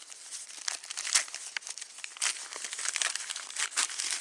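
Wrapping of a sterile first-aid bandage crinkling as hands unwrap it, in quick irregular crackles.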